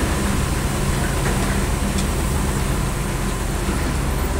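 Heavy-haul truck engine running steadily close by, a constant low drone.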